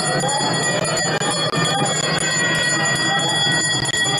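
Temple puja bell rung rapidly and continuously during an aarti lamp offering, a steady high ringing that stops near the end, with devotees' voices underneath.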